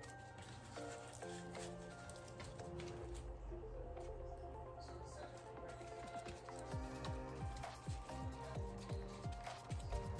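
Soft instrumental background music with steady held notes. In the second half come faint low thumps and rubs of gloved hands handling raw pork tenderloin and its dish.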